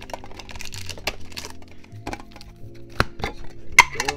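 Background music under handling noise: clicks and crinkles as small metal card tins and their wrapping are picked up and handled, with sharp clicks about three and four seconds in.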